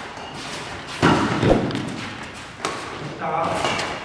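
Badminton rally: sharp racket hits on the shuttlecock and thuds of players' feet, the loudest impact about a second in and another past the middle, then a player's voice calls out briefly near the end.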